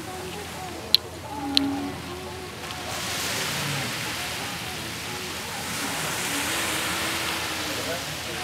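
Faint, indistinct voices with two sharp clicks early in, then a steady rushing noise that swells in from about three seconds in.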